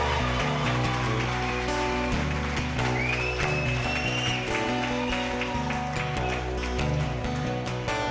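Acoustic guitar playing the opening of a song live while the audience applauds. A long whistle rises and holds about three seconds in.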